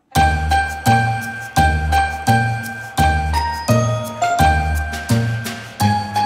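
Background music: a tinkling tune of bell-like struck notes over a bass line, about three notes a second. It starts just after a brief break at the very beginning.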